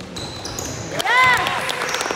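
Basketball shoes squeaking on a sports-hall floor: several sharp, high squeaks starting about a second in, with short thuds from the ball and footsteps.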